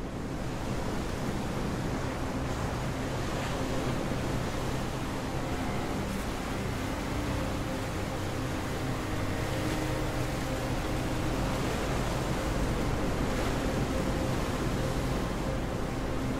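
Sea surf breaking and washing up a beach, a steady rushing noise, with a faint low steady hum beneath it.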